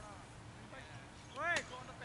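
A single short shouted call from a voice, rising then falling in pitch, about one and a half seconds in, over faint outdoor background noise.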